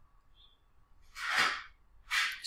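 A man's single audible breath close to the microphone: one short, noisy rush of air about a second in, lasting about half a second.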